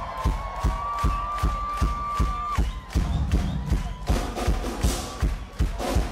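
Live rock drum kit played loud in a concert hall: a steady kick-drum beat about three times a second, a long held high note over the first two and a half seconds, and cymbals crashing in over the last two seconds.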